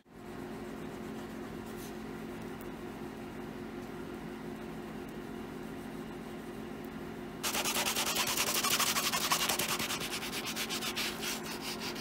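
A faint steady hum for the first seven seconds or so. Then a cloth starts rubbing rapidly back and forth along the edge of a leather card wallet, burnishing the Tokonole-treated edge smooth.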